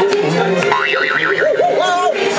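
Parade music playing over a float's sound system, with a playful melody that warbles and wobbles in pitch: a rapid trill about a second in and another wobbling run near the end.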